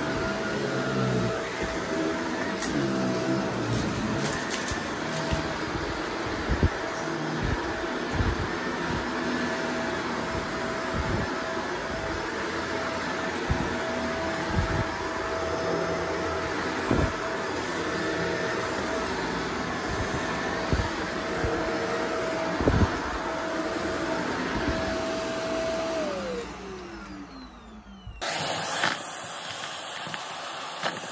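Shark DuoClean vacuum cleaner running on a carpet with a steady motor tone, sucking up sequins, glitter and toothpicks with frequent sharp clicks and crackles as the debris rattles up into the bin. Near the end the motor is switched off and winds down with falling pitch, and a steady hiss starts just after.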